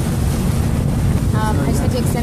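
Wind buffeting the microphone over the steady low rumble of a dive boat under way, with a short voice sound about one and a half seconds in.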